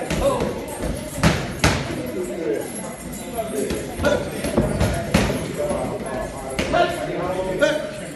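Punches landing on boxing gloves and padded headgear in sparring: several sharp slaps and thuds, two in quick succession about a second and a half in, with voices talking in the background.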